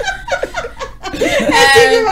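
A man and a woman laughing together, growing louder about a second and a half in.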